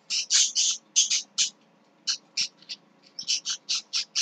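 A small bird chirping: a quick run of short, high chirps in loose groups, with short gaps about halfway through and again near three seconds in.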